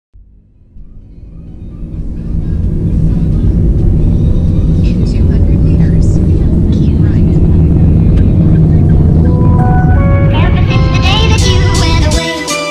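Loud, steady low rumble inside a moving car's cabin, fading in over the first couple of seconds, with music coming in near the end.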